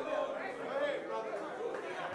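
Faint murmur of a church congregation, several voices talking and responding at once.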